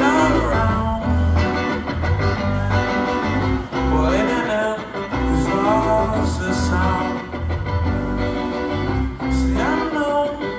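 Band playing live: electric guitar lines with bends over bass and drums, with a steady repeating bass rhythm.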